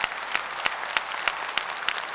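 Audience applauding, many hands clapping.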